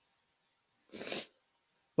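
One short, sharp breath from a woman at a close microphone, about a second in, in an otherwise silent pause.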